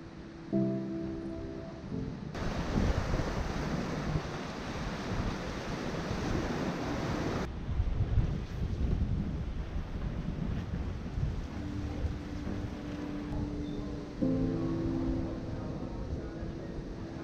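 Background music with sustained chords, over outdoor wind and sea noise. A loud, even hiss comes in about two seconds in and stops abruptly around seven and a half seconds, followed by a lower rumble of wind noise on the microphone.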